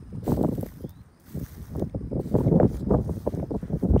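Footsteps through dense, dry, overgrown clover and grass, with stems brushing and rustling in irregular bursts and a short lull about a second in.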